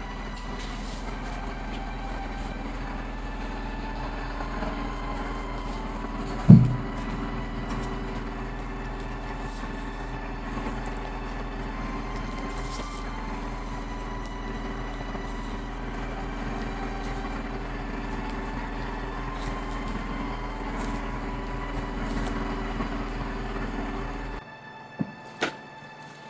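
A steady drone made of a few held tones, with one sharp low thump about six and a half seconds in.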